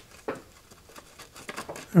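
Faint paper rustling and light scraping as a paper feeler strip is worked between a stationary slitting saw and the workpiece, used to find the point where the work touches the saw as the mill table is raised.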